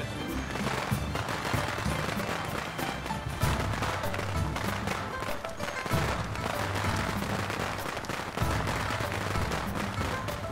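A string of firecrackers going off in a rapid, continuous crackle of bangs for a wedding, starting about half a second in. Festive music plays underneath.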